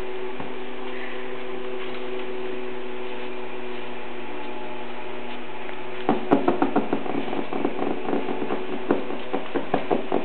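A steady low hum, then from about six seconds in a quick run of short, high yips and squeals from five-week-old Alaskan Malamute puppies at play.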